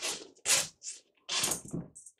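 Several short knocks and scrapes, about four in two seconds, as a marine plywood board is lifted off a sheet of mat board and set aside.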